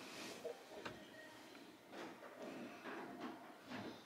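Faint scattered clicks and light knocks of a ceramic head vase being set back on a wooden cabinet shelf.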